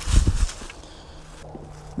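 Footsteps on dry leaf litter, a few close crunching steps in the first half second, then quieter.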